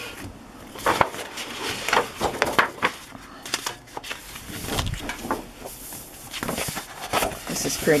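Loose sheets of patterned scrapbook paper from a paper pad being handled and turned over, making repeated short rustles and taps.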